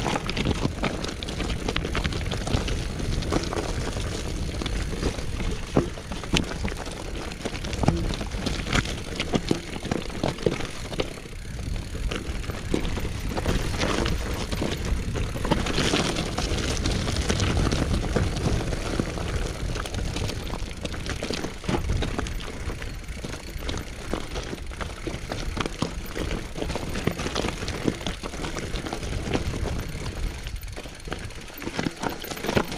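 Mountain bike riding down a rocky, loose-gravel singletrack: tyres crunching over stones and the bike rattling with frequent clicks and knocks, over a steady rumble of wind on the microphone.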